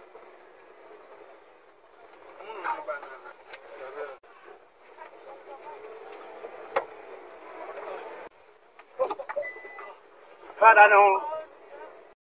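Muffled voices of people inside a bus over a low steady cabin noise, recorded thin and tinny by the dashcam. There is a single sharp click about midway, and voices pick up again near the end.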